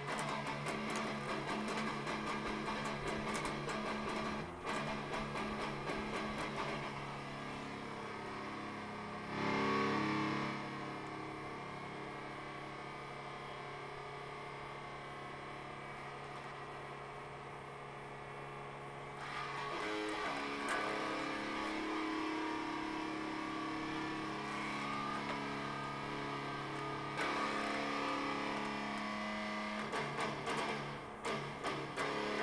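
Electric guitar played freestyle: a busy run of picked notes, then a chord struck about ten seconds in and left to ring out, then more playing from about twenty seconds.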